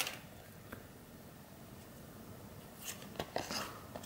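Faint handling of small paper baseball sticker cards between the fingers: a light click at the start, then quiet, then a few soft rustles and ticks about three seconds in.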